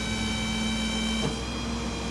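Tow truck's PTO-driven hydraulic system running with a steady high-pitched whine while the wheel lift boom is lowered; a little over halfway through, the lower tone shifts to a different pitch.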